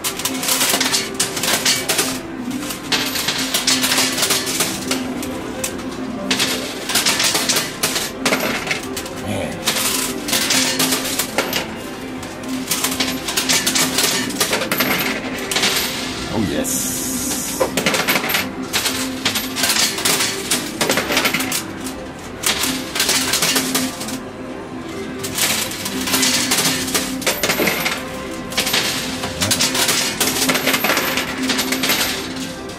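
Metal coins clinking and clattering over and over in a coin pusher machine as the pusher shelf shoves the pile and coins drop, over steady background music.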